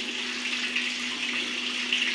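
Water running steadily from a tap into a sink while hands are rinsed under it.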